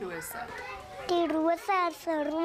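A young child speaking in a high voice, starting about a second in, after a quieter first second.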